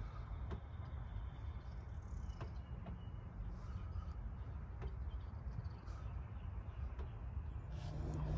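Faint outdoor background: a low steady rumble with a few soft ticks and a faint bird call about two seconds in.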